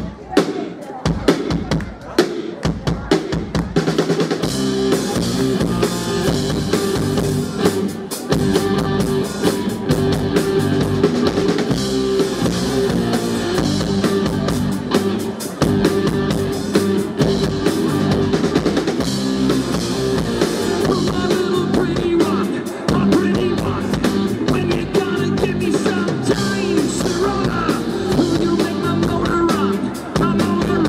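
Live rock band with drum kit, electric guitar, bass guitar and keyboard playing a song's instrumental opening. Drum beats lead, and the pitched instruments come in about four seconds in and hold a steady driving groove.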